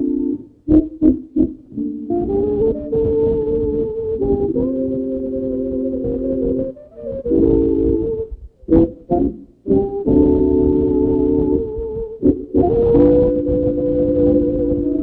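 A small dance band with accordion and saxophones playing slow, held chords, heard from an old wire recording. The sound drops out suddenly several times, with sharp clicks, about a second in, around seven to nine seconds in and again near twelve seconds.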